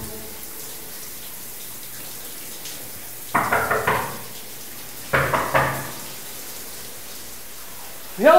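Steady hiss of running water in a tiled washroom, broken by two short louder sounds, a little over three and about five seconds in.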